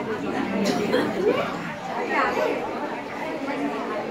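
A group of women chattering, many voices overlapping at once.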